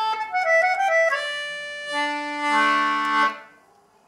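Jackie 30-key English concertina playing the last phrase of a tune: a quick run of notes down and back up, a held note, then a final chord with lower notes joining in. The chord cuts off sharply a little after three seconds in.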